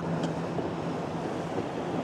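Wind on the microphone and water rushing past the hull of a small open boat under way at about seven miles an hour, with a faint steady hum from its ePropulsion Navy 6.0 electric outboard motor.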